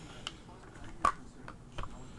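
A few small clicks and light knocks from handling a Sig Sauer 522 rifle, the loudest about a second in.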